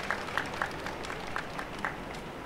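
Audience applause: a handful of scattered hand claps over crowd noise, thinning out.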